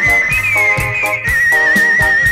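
Old Khmer pop music, instrumental passage: a high held melody note with a slight vibrato over chords on a steady beat, with bass and cymbal or drum strokes.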